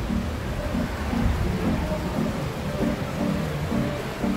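Low, steady rumble of the Kurobe cable car, an underground funicular, running up its tunnel track toward the station, under background music with short pitched notes.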